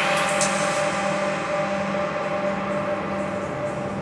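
Electronic dance music with the drums dropped out after a rising sweep: a held synth chord rings on steadily under a hiss of noise that fades away.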